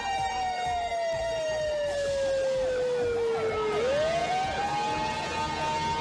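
Sirens on a film soundtrack. One wail falls slowly for nearly four seconds, then sweeps quickly back up and holds high, while a faster rising-and-falling siren repeats alongside it over steady music tones.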